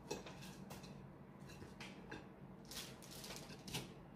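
Faint clicks and light scrapes of a metal fork against a plate while food is picked up, a handful of them scattered through.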